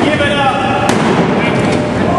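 Spectators in a hall shouting and yelling during a wrestling pin, with one sharp slap about a second in.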